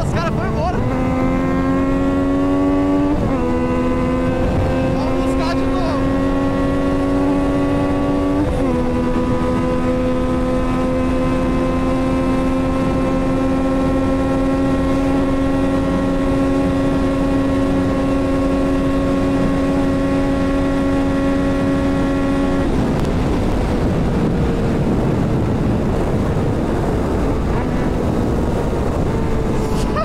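Yamaha MT-09 inline three-cylinder engine with a full exhaust, accelerating at full throttle on a top-speed run, with wind rushing over the microphone. It changes up twice, about 3 and 9 seconds in, each shift dropping the pitch, then climbs slowly in top gear. About 23 seconds in the throttle closes and the engine note falls away as the bike slows.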